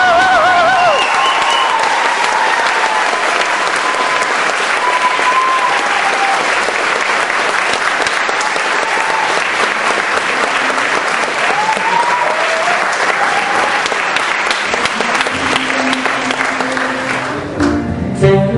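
Audience applauding steadily. A saxophone phrase trails off about a second in, and backing music comes in under the applause near the end.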